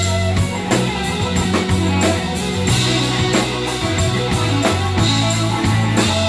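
Live band playing a song: electric guitar, keyboard, bass guitar and drum kit, with a steady drum beat and sustained bass notes.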